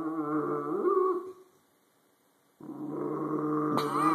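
Dog growling in long, pitched grumbles that rise and fall, guarding her bone. The growl stops about a second and a half in and starts again about a second later.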